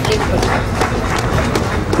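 Audience applauding, a run of distinct, irregular hand claps.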